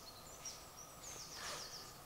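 Faint bird calls in woodland: a few short, high chirps in the middle, over quiet outdoor background.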